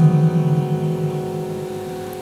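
A woman singing a low, held note into a microphone over a ringing acoustic guitar chord, both fading away.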